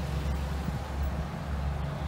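Low, steady hum of motor vehicle engines idling in a traffic jam, with faint outdoor background noise.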